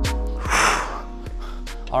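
Background electronic music with a beat, and a man's hard breathy exhale about half a second in, blown out from the exertion of hanging leg-raise work on a pull-up bar.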